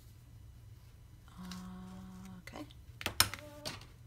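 Squeaky chair: one held squeak of about a second, then a few sharp clicks and a shorter squeak near the end.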